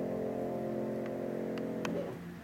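A Kawai US-75 upright piano's last chord held and ringing, slowly fading, then damped just before the end. A few soft clicks are heard in the second half.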